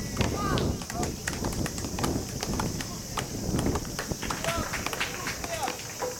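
Tennis rally on a sand-filled artificial grass court: sharp racket-on-ball hits and quick footsteps scuffing the sand. Short voices call out near the start and near the end, over a steady high hiss.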